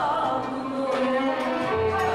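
Turkish classical music ensemble playing an instrumental passage, bowed strings carrying the melody in held and moving notes.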